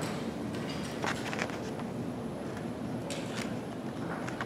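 Steady low room hum in a large meeting chamber, with a few short clicks and rustles of people shifting and handling things: a cluster about one second in and another just after three seconds in.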